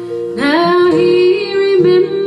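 Acoustic folk-blues song: guitar accompaniment with a female voice that slides up into a long held note about half a second in.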